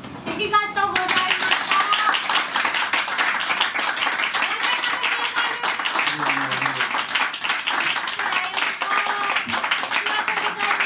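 Small audience applauding, the clapping breaking out suddenly about half a second in and carrying on steadily, with a few voices calling out near the start.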